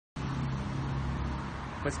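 Steady outdoor street traffic noise with a constant low hum. A man's voice begins near the end.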